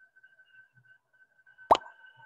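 A single short pop with a quick upward pitch, played once near the end by the Quizizz game lobby when a new player joins, over a faint steady high tone.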